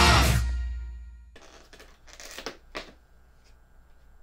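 Heavy rock band music with drums and guitar fading out over about the first second. It gives way to a quiet room with a faint steady hum and a few short rustling, handling noises and soft clicks.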